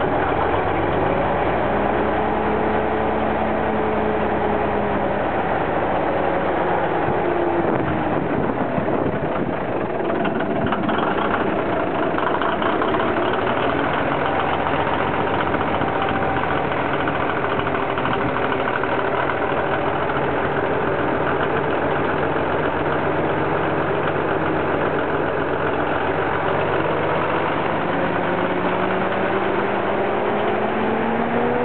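Diesel engine of a Willème LB 610 TBH lorry idling steadily, being brought back to running, with its speed rising slightly near the end.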